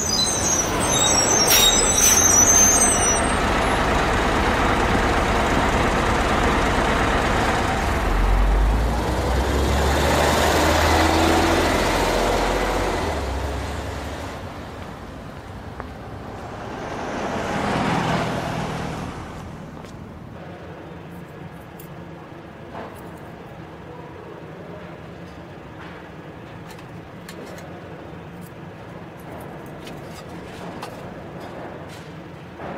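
CNG-powered Hyundai city bus at a stop: a high-pitched brake squeal as it pulls in, then its engine running with a deep rumble that builds about eight seconds in as it pulls away. A second vehicle passes about eighteen seconds in, and from about twenty seconds only a quieter steady background remains.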